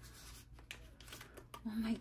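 Soft rustling and a few light clicks of paper bills being handled and slipped into a green envelope pocket in a ring binder.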